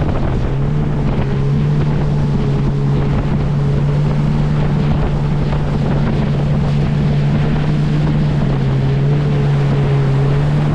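A 2022 Yamaha VX Cruiser HO WaveRunner's 1.8-litre four-stroke engine and jet drive running at steady cruising speed, holding one even drone. Spray hisses off the hull and wind buffets the microphone.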